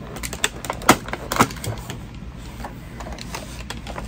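Plastic toy packaging being cut and pulled apart with a box cutter: a few sharp clicks and snaps, the loudest about a second in and again half a second later, among quieter plastic handling.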